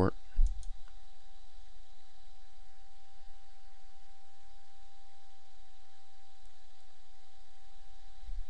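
A computer mouse click about half a second in, with another faint click a few seconds later, over a steady low hum with a thin constant whine.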